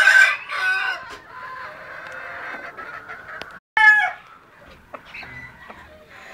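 Chickens calling: a rooster crowing at the start, then a drawn-out call with clucking, and a short loud squawk about four seconds in.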